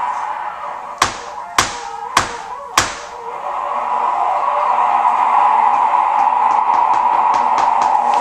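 Free-improvised music for trumpet, piano and percussion: four sharp knocks about half a second apart, over a held high note that then swells louder and sustains.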